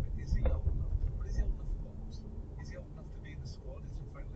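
Steady low rumble of a car driving slowly along a road, the engine and tyre noise heard from inside the cabin.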